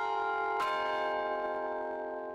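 A short run of bell strikes: tones already ringing as it begins, one more strike about half a second in, and the overlapping bell tones ringing on and slowly dying away.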